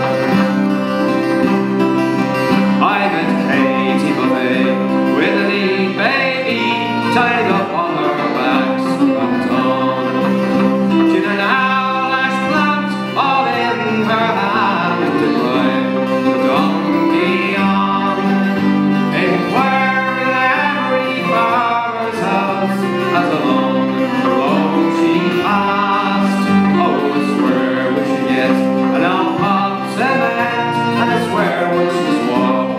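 Man singing an Irish folk ballad to his own strummed steel-string acoustic guitar, performed live.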